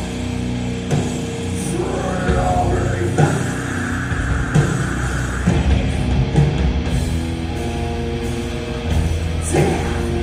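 A live rock band playing: two electric guitars, bass guitar and a drum kit.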